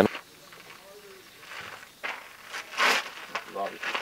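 Quiet outdoor stretch with faint distant voices, a short hiss about three seconds in, and a single spoken word near the end.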